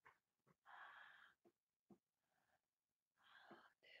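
Near silence, broken by two soft breathy sounds from a person at rest and a few small mouth clicks.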